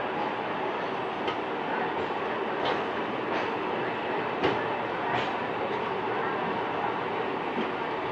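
Indian Railways passenger coach of the Karnataka Sampark Kranti Express rolling along the track, heard from on board as a steady rumble of wheels and running gear. A handful of sharp clicks and knocks come at irregular intervals, the loudest about halfway through.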